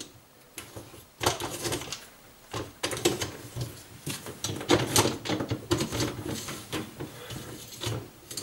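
Irregular clicks, knocks and rattles of a plastic dishwasher spray arm being pushed into its grooves under the wire upper rack, the rack rattling as it is handled.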